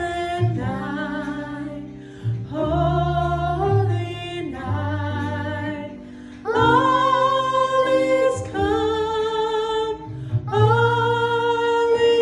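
Music with a singing voice holding long notes, phrase after phrase, over a low bass line.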